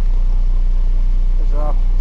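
Dump truck's diesel engine idling steadily, a low, even rumble heard inside the cab.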